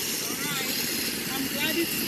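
Soundtrack of an outdoor phone video starting to play over a screen share: steady background noise that starts suddenly, with a voice speaking faintly under it.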